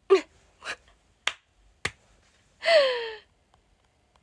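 A young woman's short breathy vocal sounds. First comes a brief falling 'ah' and a puff of breath, then two sharp clicks about half a second apart, then a longer breathy 'ahh' that falls in pitch.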